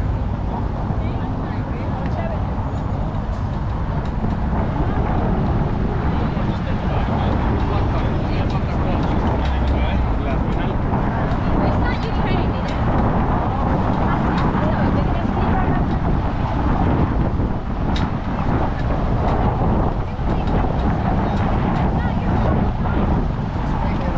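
Busy downtown street ambience: steady motor traffic with passers-by talking.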